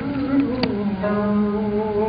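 Turkish classical song in makam Hüzzam: a man holding a long sung note, accompanied by an oud, with one plucked oud note about half a second in.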